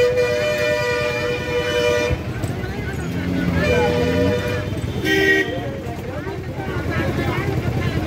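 Vehicle horns honking: one long steady blast over the first two seconds, a shorter one around four seconds in, and a brief higher-pitched toot a little after five seconds, over continuous crowd chatter.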